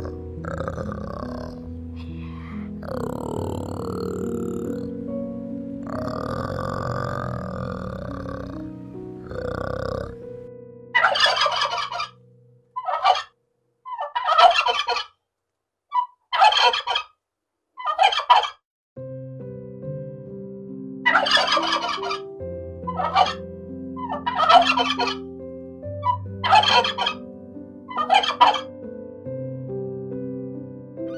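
A male wild turkey gobbling about ten times, each gobble a rapid rattling call about a second long, spaced one to two seconds apart and starting about ten seconds in. Background music plays before the gobbling and again under the later gobbles.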